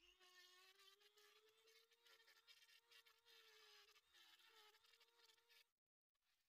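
Very faint, near-silent whine of a handheld rotary tool running on an aluminum L-bracket, steady with a slight waver in pitch, stopping just before the end.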